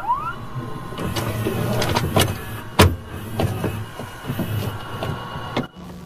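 Electronic sound-design stinger: a rising sweep at the start, then held tones struck through by a series of sharp hits, cutting off abruptly near the end.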